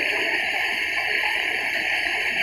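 Fountain water jets splashing, a steady hiss of spraying and falling water.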